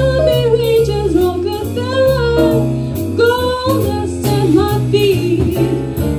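A young female vocalist singing a jazz tune live, backed by a small jazz combo. An electric bass walks a steady line, and a drum kit keeps time with regular cymbal strokes.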